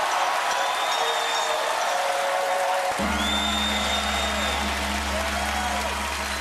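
Studio audience applauding and cheering while the house band plays. About halfway through, a low held chord comes in and sustains.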